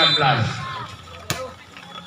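A man's voice trails off, then a volleyball is smacked once, a single sharp hit just over a second in.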